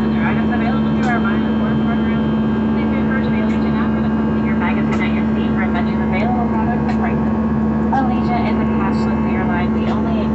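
Steady drone of an airliner cabin in flight, with an even rushing roar and a constant low hum. Faint snatches of other people's voices come through over it.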